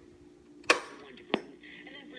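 Two sharp clicks from handling the 1959 Bulova Model 120 tube clock radio, the first louder, about two-thirds of a second apart; a low hum stops at the first click. Near the end the radio's AM broadcast speech comes in, thin and tinny.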